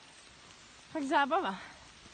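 A person's voice speaking a short phrase about a second in, over a faint steady outdoor hiss.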